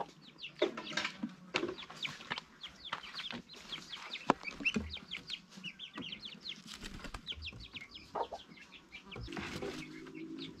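A hen clucking while her chicks peep in many short, high cheeps as they go into the coop. A single sharp tap sounds about four seconds in.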